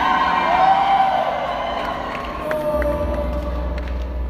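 Audience cheering and whistling as a solo acoustic guitar performance ends, with the last guitar chord ringing out and fading in the first second.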